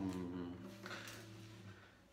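Seagull S6+ acoustic guitar's open strings ringing on and fading away after a strum, dying out near the end; a voice trails off at the very start.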